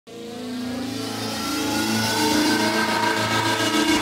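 Intro title sound effect: a swelling, slowly rising tone that grows louder over about four seconds.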